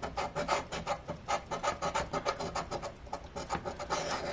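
A coin scraping the scratch-off coating of a paper lottery ticket in rapid repeated strokes, a dry rasping scratch.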